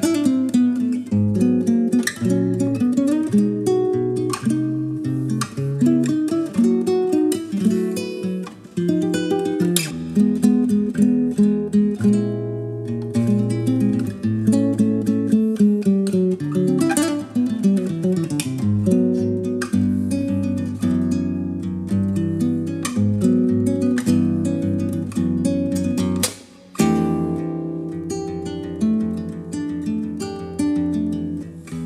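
Acoustic guitar music, plucked and strummed notes playing continuously, with a brief break near the end before it carries on.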